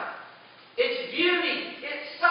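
A man preaching into a pulpit microphone; his voice breaks off briefly and resumes a little under a second in.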